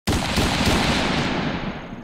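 Intro sound effect for a title card: a loud burst of noise with a low rumble underneath. It hits suddenly at the start and fades away over about two seconds.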